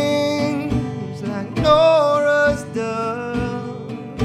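A man singing a slow folk song with plucked acoustic guitar accompaniment. He holds long notes while the guitar keeps up a steady plucked pattern beneath.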